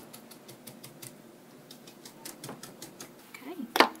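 Dome stencil brush dabbing acrylic paint onto a wooden board, a rapid run of soft taps about six a second that thins out after about two seconds. A single louder knock comes near the end.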